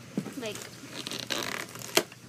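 Rustling and scraping as plastic toy pieces and packaging are rummaged through, lasting about a second, then a sharp click near the end.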